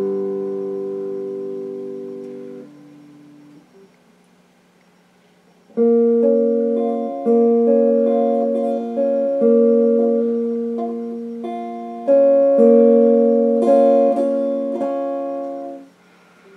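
Electric guitar chords. A chord rings and fades away over about three seconds, then after a short pause a series of chords is picked, a new one about every second, each left to ring.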